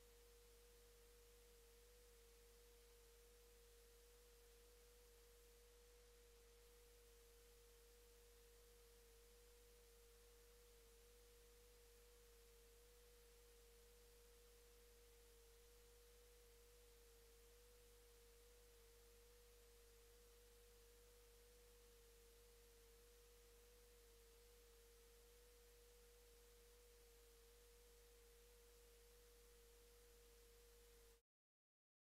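Near silence: a faint, steady pure tone holds at one mid pitch throughout, over a low hum.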